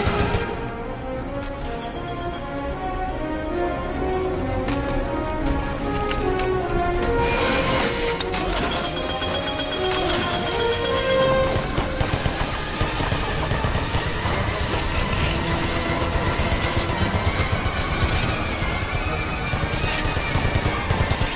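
Dramatic film-score music over a continuous stream of rapid impacts, like gunfire and crashes, which grows denser in the second half.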